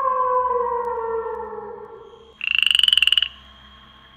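A long, slowly falling tone fades away over the first two seconds. About two and a half seconds in, a frog gives one loud croak, a fast rattling trill lasting just under a second. A faint, steady high tone goes on after it.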